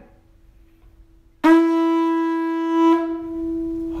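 A carved conch shell blown like a trumpet with buzzing lips, sounding one long steady note that starts suddenly about a second and a half in, swells briefly near the end and then eases off.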